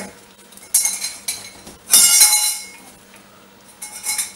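Flaps of a large cardboard shipping box being pulled open. There is a short sharp scrape about three-quarters of a second in, then a louder scrape of cardboard rubbing on cardboard with a squeaky ring at about two seconds.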